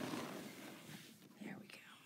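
Quiet, half-whispered speech with faint rustling of quilted cotton fabric being handled; the rustling fades over the first second.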